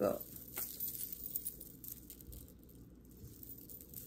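Beaded necklace strands and metal chains clicking and rustling faintly as they are handled and untangled, a few light clicks over a quiet room.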